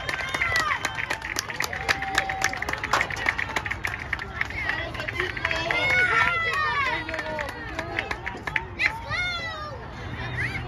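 Players and spectators shouting and calling out across a soccer field during play, with many quick sharp clicks through the first half.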